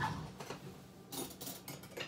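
A few faint clinks and knocks of cutlery being handled as a knife is fetched, spread out with quiet between them.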